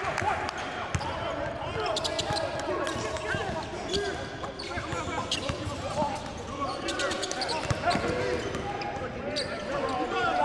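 Basketball practice sounds on a gym floor: basketballs bouncing on hardwood in irregular knocks, with indistinct voices of players and coaches calling out over them.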